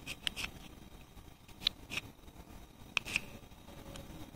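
Old hacksaw blade scraping out the slots between the copper commutator bars of a starter motor armature, clearing out carbon brush debris: short, faint scratching strokes, a few at a time.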